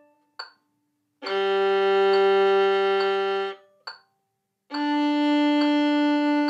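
Violin bowing long, even whole-bow notes on the open D and G strings. A D note dies away at the start, an open G sounds for a little over two seconds from about a second in, and an open D begins near the end, with a soft tick on each beat between them.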